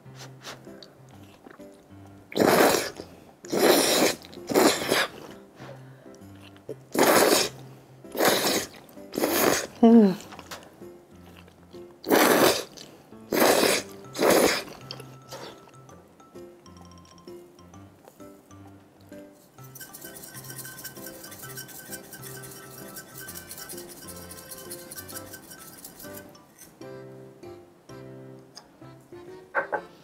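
Noodles being slurped in long, noisy pulls, in three runs of three slurps each over light background music.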